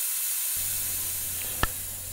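Pressurised Novec 1230 extinguishing agent discharging from a Firetrace automatic fire suppression system: a steady, slowly fading hiss as the gas floods the test chamber. A single short click comes about a second and a half in.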